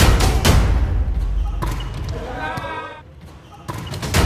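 Volleyball struck by players' hands in a sports hall: sharp smacks, two close together at the start and more near the end, with players calling out in between.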